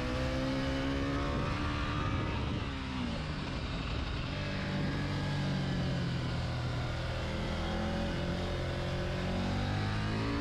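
KTM 890 Duke R's parallel-twin engine heard on board while riding: the revs drop about two and a half seconds in, then build gradually again as the bike accelerates.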